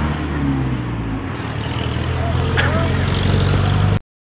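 A motor vehicle's engine running steadily, a low hum that holds throughout, with faint voices over it.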